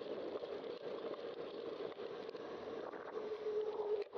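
Steady rolling noise of a bicycle on a paved path with wind on the camera microphone. A steady mid-pitched tone joins in near the end.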